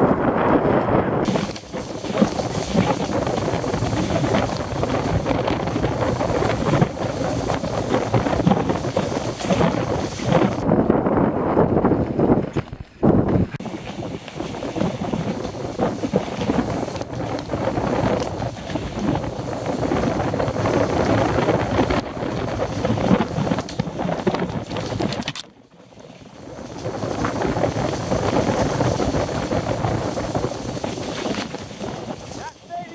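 Mountain bike riding down a rough dirt singletrack, recorded on a helmet camera: wind buffeting the microphone over tyre noise and the rattle of the bike over roots and ruts. The sound dips briefly three times, about a second in, near halfway and near the end.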